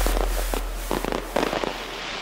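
Fireworks crackling and popping in quick, irregular bursts while a low rumble fades away underneath.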